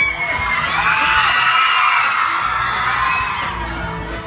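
A crowd of fans screaming and cheering, many high voices overlapping, swelling about half a second in and tailing off towards the end.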